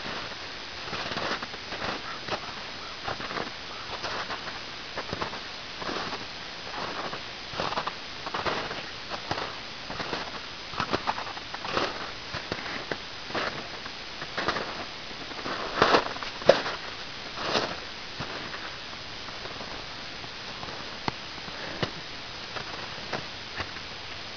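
A person's footsteps crunching and sinking through snow, one irregular step about every second, the loudest a little past the middle; the steps thin out over the last few seconds.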